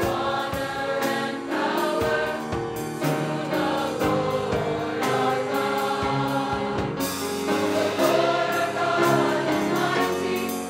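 A school choir singing in parts, many voices together, with short struck accompaniment notes beneath the voices.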